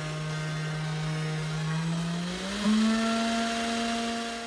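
A 500 W CNC spindle motor running free on its first test, with a steady whine. About two and a half seconds in, the whine glides up to a higher pitch as the spindle speed is raised, then holds steady.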